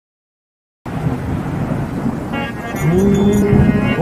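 Live devotional music through a sound system cuts in suddenly about a second in with a low rumbling noise. Harmonium tones join about two seconds in, and a man's voice slides up into a long held opening "o" of the bhajan about three seconds in.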